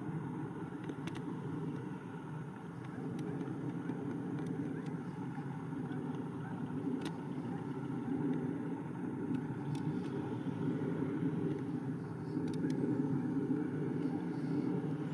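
Distant McDonnell Douglas F-15 Eagle flying overhead, its twin jet engines in afterburner making a steady low rumble that grows a little louder in the second half.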